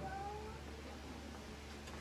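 Faint room tone with a low steady hum. A brief, faint rising tone comes in the first half-second.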